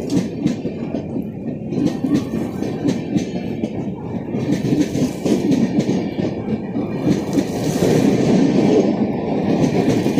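LHB coaches of an express train rolling past on departure, wheels clicking and clattering over the rail joints with a steady rumble, louder near the end.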